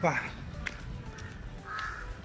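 A crow cawing in the background, after a brief spoken syllable at the start.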